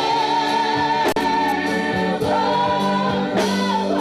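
Gospel choir of men and women singing into microphones, holding long notes.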